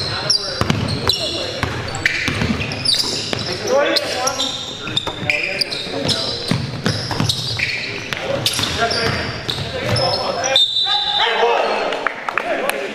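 Live basketball game sound in a gym: the ball bouncing on the hardwood floor, sneakers squeaking, and players' indistinct shouts and calls.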